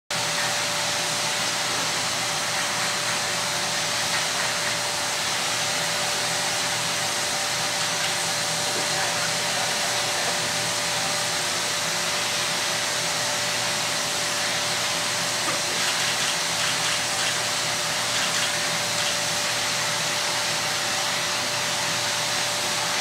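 Spray-tan airbrush machine's turbine blower running steadily, pushing air down the hose to the handheld spray gun: a constant rush of air with a steady whine.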